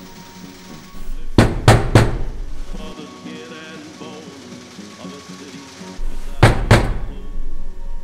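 Knocking on a door: three quick knocks about a second and a half in, then two more near the end.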